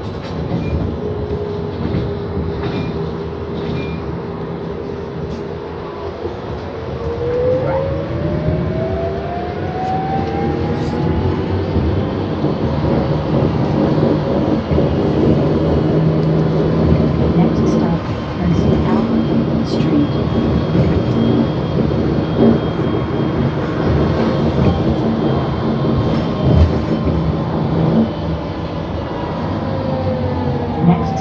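Inside a moving city bus: a motor whine rises in pitch for about five seconds as the bus accelerates, then holds steady over the rumble and road noise, with a few short clicks and rattles in the second half.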